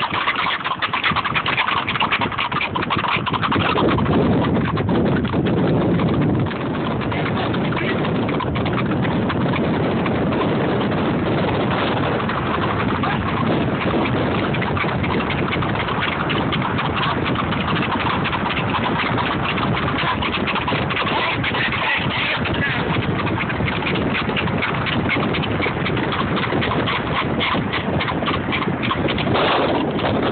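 Horses' hooves clip-clopping on a paved road as they move at pace, a fast run of hoofbeats over a dense, steady noise.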